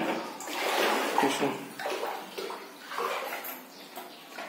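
Floodwater sloshing and splashing as someone wades through a flooded room, a surge of water noise with each stride, about once a second.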